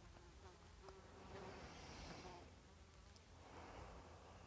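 Faint buzzing of a flying insect, such as a fly or bee, near the microphone, swelling about halfway through and then fading, over near silence.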